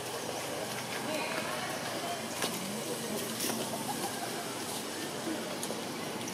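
Outdoor background of faint, indistinct voices with birds calling.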